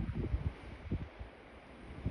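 Wind buffeting the microphone in uneven low gusts that ease off after about a second.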